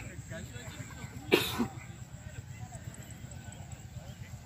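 A single loud cough close to the microphone, about a second and a half in, over a steady murmur of distant voices.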